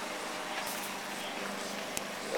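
A distant motor running steadily under outdoor background noise, with one light click near the end.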